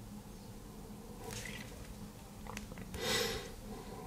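Faint steady low hum, with two light clicks of a phone's side keys being pressed about two and a half seconds in, then a short rustle of hands on the phone about three seconds in.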